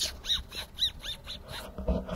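A dog giving a rapid series of short, high, squeaky whining cries, then a low thump near the end.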